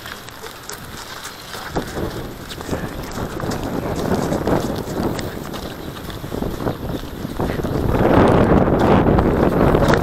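Footsteps on a snow-covered path with wind noise on the action camera's microphone, the wind rising louder over the last two seconds.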